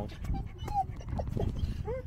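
A dog giving a couple of brief whimpers, one falling and one rising in pitch near the end, over wind rumbling on the microphone.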